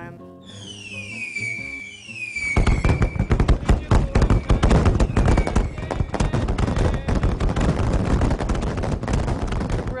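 Fireworks sound effect over background music: several falling whistles, then from about a quarter of the way in a dense crackle of bursts and bangs that runs on until near the end.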